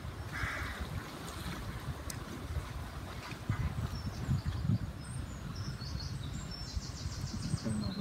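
Uneven low rumble of wind on the microphone. From about halfway through, a small songbird sings runs of quick, high-pitched repeated notes, with one short lower call near the start.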